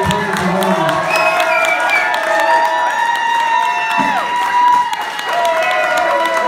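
Audience applauding and cheering, with long held whoops over the clapping.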